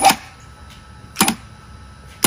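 Stagemaker electric chain hoist, fed three-phase from a VFD on single-phase power, jogged in short bumps: two brief mechanical clicking bursts about a second and a quarter apart as the motor starts and stops the chain.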